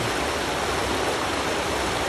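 Water pouring over a small river weir: a steady, even rush of falling water.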